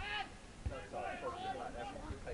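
Men's voices calling out across a football pitch during play, with a single low thump about two-thirds of a second in.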